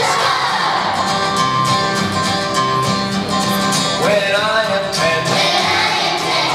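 A kindergarten choir singing a song together over instrumental accompaniment, with a sung note sliding upward about four seconds in.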